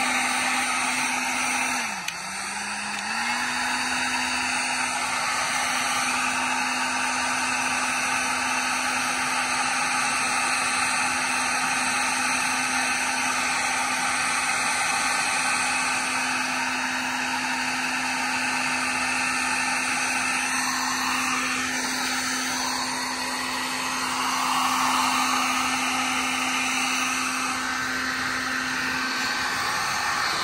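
Electric heat gun running steadily, its fan and motor giving a constant whooshing hum. The hum dips briefly in pitch and level about two seconds in.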